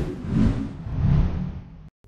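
Sound effect of an animated logo intro: a deep rumble that swells twice and fades, cutting off just before the end.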